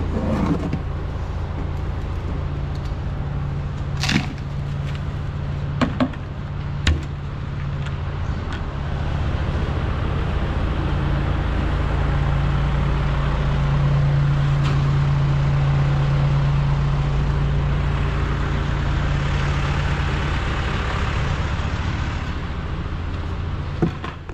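A farm machine's diesel engine running steadily, growing louder in the middle and easing off towards the end. A few short sharp knocks sound over it about four, six and seven seconds in.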